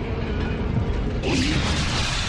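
Produced radio station-ID sound effects: a dense clattering texture under a faint music bed, joined about halfway through by a loud hissing swell.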